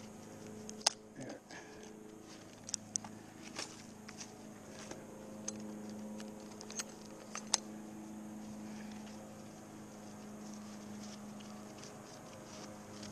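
Light scattered clicks and rattles of carabiners and rope rigging gear being handled, about a dozen over the first eight seconds, over a steady low hum.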